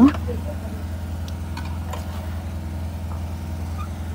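Power generator running, a steady low drone with no change in pace.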